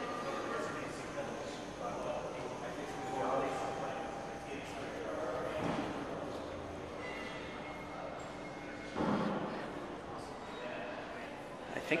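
Elevator-lobby room tone with a steady hum and faint distant voices. About nine seconds in comes a sudden rushing sound lasting about a second, which the listener takes for an elevator car, or perhaps its counterweight, moving in the hoistway.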